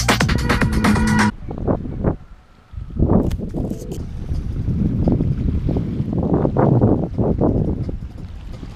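Electronic dance music that cuts off abruptly about a second in. After a brief lull, gusty wind rumbles unevenly on the microphone.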